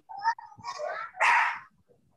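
A dog barking a few times in short bursts, the loudest near the end of the run, picked up over the video-call audio.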